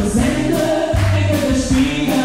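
Live band music: a woman and a man singing together over a drum kit and guitar, with a steady beat of cymbal and drum strokes about twice a second.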